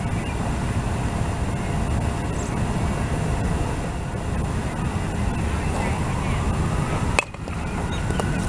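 Steady low outdoor rumble with no clear pitch, with one sharp click about seven seconds in and a faint rising whine near the end.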